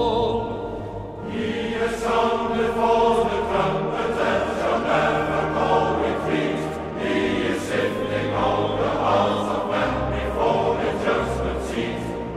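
A choir singing slowly, several voices holding long notes that change every second or so.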